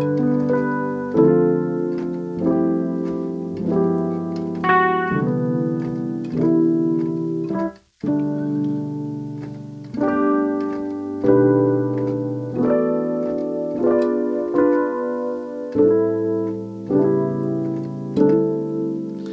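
Electric piano voice on a digital keyboard playing a slow progression of held, extended worship chords in G, moving to a new chord about every second or so. The sound cuts out briefly about eight seconds in.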